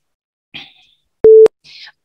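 A single short electronic beep, one steady tone about a quarter of a second long, from the PTE test's online audio recorder, signalling that recording has begun.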